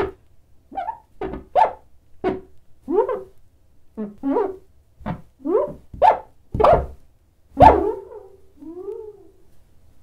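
Cartoon creature sound effects voicing an animated bar of soap: about a dozen short squeaky yelps and chirps that bend in pitch, each landing with a small tap or thud as it hops. The loudest comes late, followed by a softer sliding call.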